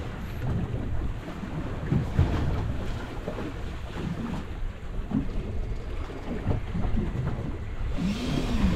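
Wind buffeting the microphone on an open boat at sea, with waves slapping the hull; an uneven, gusty rumble with no steady tone.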